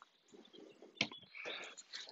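Faint handling sounds of a lightweight wooden-framed netting panel being lifted: a single light knock about a second in, then soft rustling.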